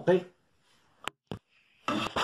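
A spoken 'ok', then two sharp clicks about a second in and a brief cluster of clicks near the end: handling noise.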